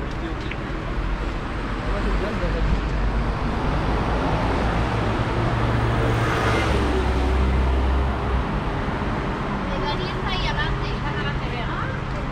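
Street traffic with a motor vehicle passing close by: a low engine rumble swells about four seconds in, peaks a couple of seconds later and drops away about eight seconds in. Passersby are talking.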